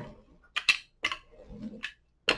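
Hand roller pressed and rolled over a diamond painting's resin drills on a canvas: a few scattered sharp clicks with faint rubbing in between.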